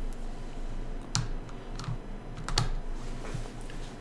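A few light clicks and taps of a stylus on a tablet screen, the two clearest about a second apart near the middle, over a steady low hum.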